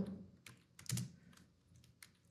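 Computer keyboard typing: a few faint keystrokes at an uneven pace.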